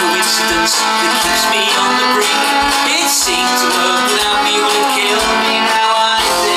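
Live folk-rock band playing, with mandolin and guitars to the fore over a recurring low bass pulse.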